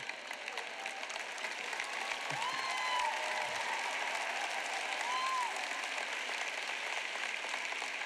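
Audience applauding, a steady patter of clapping that grows a little louder about two seconds in, with a couple of brief voices from the crowd.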